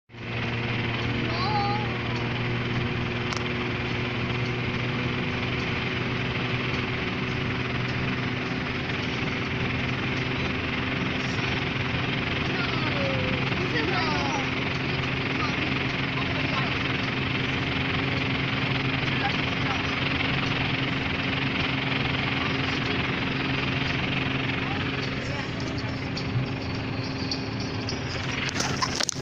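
Steady road and engine noise inside a car driving at highway speed: a constant rushing hiss over a low, even hum.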